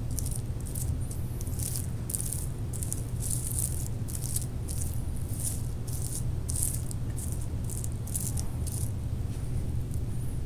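Loose gold glitter rasping as a glue-coated wooden dowel is rolled back and forth through it by hand, in short strokes about two a second, over a steady low hum.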